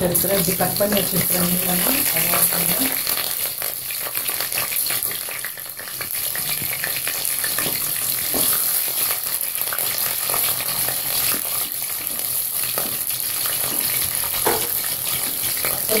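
Slit green chillies frying in hot oil with whole spices in a stainless steel pressure pan: a steady sizzle with many small pops, as the pan is stirred.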